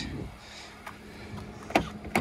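Quiet outdoor background with a faint low hum, and a light click near the end as a hand reaches the car's door handle.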